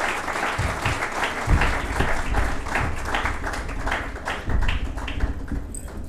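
Audience applauding, many hands clapping at once, with a low rumble underneath from about a second and a half in.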